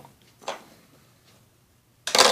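A single short plastic click about half a second in from a spring-loaded jumping toy sabre-tooth tiger (McDonald's Ice Age 3 Diego figure) as it is pressed down and cocked; otherwise quiet.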